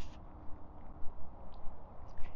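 Walking picked up by a wireless microphone hanging on the chest under a shirt: soft, regular bumps about twice a second over a low wind rumble.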